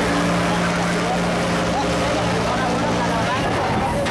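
An engine running steadily with a low even drone that stops shortly before the end, amid the sound of a harbour fire scene with people's voices.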